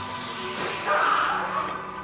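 Airbrush spraying body paint through a mesh stencil: a steady hiss of air and paint that cuts off sharply just over a second in.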